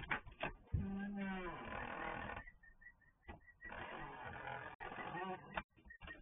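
A glass storm door being pushed open and someone stepping out through it, heard through a security camera's microphone. About a second in there is a short creak that bends in pitch, followed by two stretches of rustling and scraping and a few sharp clicks.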